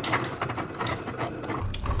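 Cricut cutting machine cutting a printed sticker sheet in fast mode: the carriage and rollers run with a low hum and rapid, irregular clicking.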